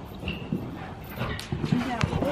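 Hoofbeats of a cantering horse on soft indoor-arena footing, irregular dull thuds, with indistinct voices in the background.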